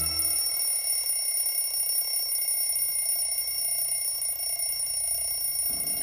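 A steady high-pitched ringing made of several held tones, unchanging throughout.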